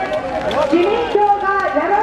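Continuous speech: one person's voice addressing a crowd through a public address loudspeaker.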